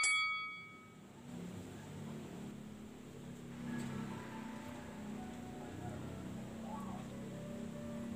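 A bell-like chime rings out and fades away in the first second. After that, only faint, low murmuring sound comes from the opening of a live concert video, with the stage still dark before the song begins.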